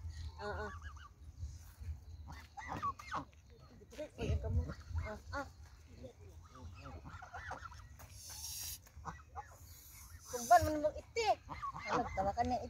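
Canada geese giving short, scattered honks and calls at close range while they are being fed.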